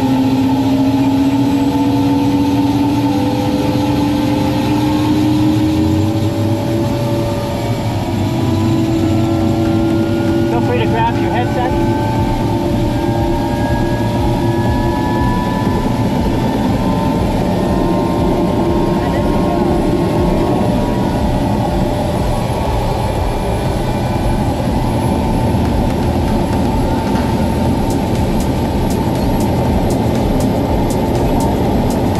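Helicopter engine and rotor running up on the ground, heard from inside the cabin: a steady loud drone with a whine that rises slowly in pitch over the first several seconds as it comes up to speed.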